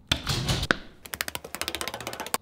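A sharp click as a wall-mounted garage door button is pressed, followed by a quick, even run of light ticks, about ten a second.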